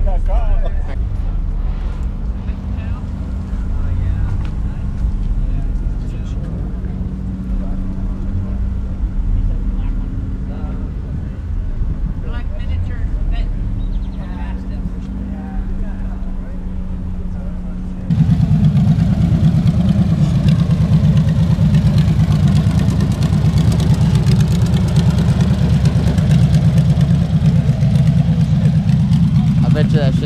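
A car engine idling steadily with a low hum. About eighteen seconds in, the sound jumps abruptly to a louder, rougher low rumble that holds to the end.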